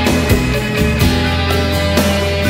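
Rock music with electric guitar, bass and a steady drum beat, no vocals.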